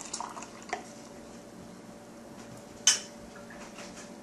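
Green juice pouring from a glass measuring cup into a glass mason jar, the stream trailing off within the first second. A sharp clink of glass about three seconds in.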